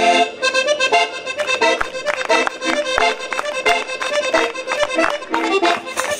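Live traditional folk music led by an accordion, with acoustic guitar, over a steady rhythm of sharp percussive beats, about three a second.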